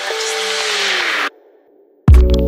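Edited transition effect: a bright whoosh over a tone that slides steadily down in pitch, cut off abruptly about a second and a quarter in and followed by a short silence.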